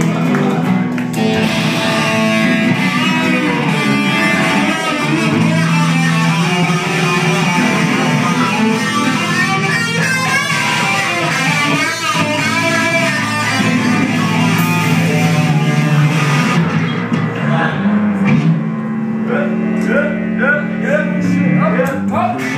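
Amplified electric guitars playing loud, with drums and a steady low bass line underneath.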